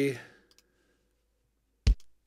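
A single punchy kick drum hit near the end: a sampled Yamaha RX11 drum machine kick triggered from Logic's step sequencer. It is preceded by a couple of faint clicks.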